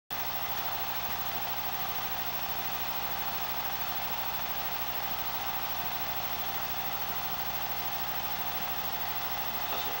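Film projector running: a steady motor hum and hiss with a constant high whine.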